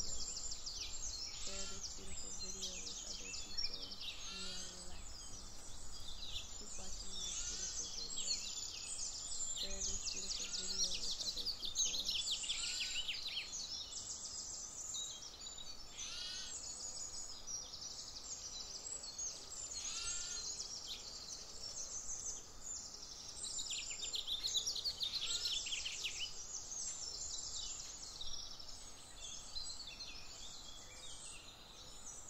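A dense chorus of songbirds chirping and trilling without a break, with clear falling whistles every few seconds, over a steady faint hiss.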